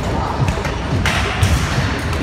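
Skatepark ambience: repeated thuds and knocks of BMX bikes and scooters riding and landing on the ramps, with a brief harsher noisy burst about a second in.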